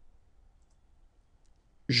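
Near silence: faint room tone with a couple of faint clicks. A man's voice starts just before the end.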